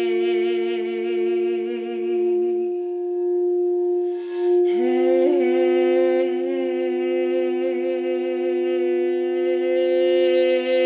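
Frosted quartz crystal singing bowl for the heart chakra, rubbed around the rim with its wand, giving one long, steady ringing tone. Over it a woman's voice holds a wordless note with vibrato, breaks off for a breath a few seconds in, then comes back on a slightly higher note.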